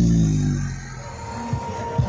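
Electronic dance music from a truck-mounted parade sound system. A loud deep tone slides down in pitch, then the level drops and low kick-drum hits come in near the end.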